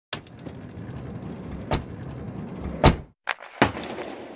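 Sound effects for an animated logo intro: a rushing noise bed punctuated by several sharp hits, the loudest about three seconds in, trailing off at the end.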